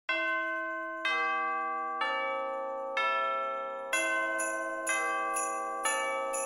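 Music of bell-like chime notes struck one at a time, each ringing on and fading, about one a second at first and quickening to about two a second after four seconds.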